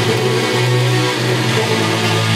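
Electric guitar playing sustained low notes over electronic backing music, the low notes changing pitch about half a second in and again about a second in.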